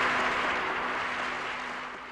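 Audience applause, fading out steadily.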